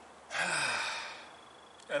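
A man's long, exasperated sigh: one breathy exhale that starts strong and fades away over about a second.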